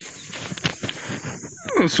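Outdoor noise from a phone microphone carried along a dirt farm track: rustling and handling noise with a few sharp knocks, then a man's voice coming in near the end.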